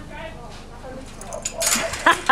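Faint background talk from people nearby, with a short hissing noise near the end.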